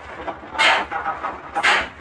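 Air-operated diaphragm pump transferring fuel, its air exhaust puffing out in hissing bursts about once a second, twice here.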